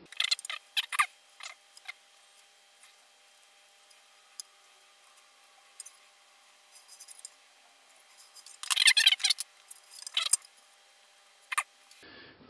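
Light clicks and scrapes of hand tools and hardware on a guitar body: a steel rule and pencil, and a chrome Telecaster bridge being picked up and set down. The sounds come in short clusters, the busiest about nine seconds in.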